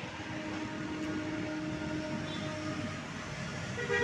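Road traffic passing on a busy road: a steady wash of engine and tyre noise with a low hum that fades out about three seconds in.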